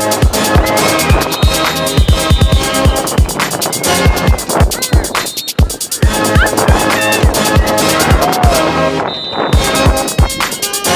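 Background music with a heavy, steady beat of deep bass kicks, with a short break in the high end near the end.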